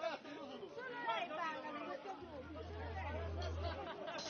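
People chatting, several voices talking over one another. A low steady hum comes in about halfway through and stops shortly before the end.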